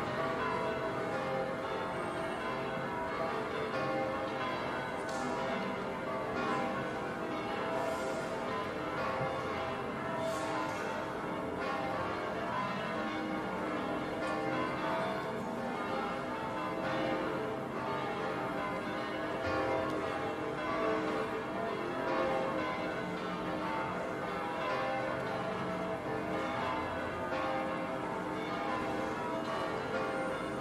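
Several large church bells ringing together in a continuous peal, their many tones overlapping without a break.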